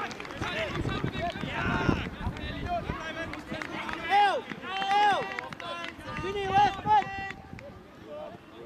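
Children's high-pitched shouts and calls during a youth football match, several loud rising-and-falling cries about four to seven seconds in.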